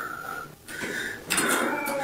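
Drawn-out, high, cat-like meows, three in a row. The woman recording believes they come from something imitating her cat to lure her into the hallway.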